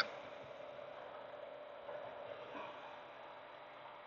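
Faint, steady cab noise of a moving semi-truck, an even rush with a low steady hum.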